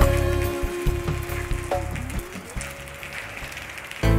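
The last notes of a song fade out over the first two seconds, leaving steady rain falling.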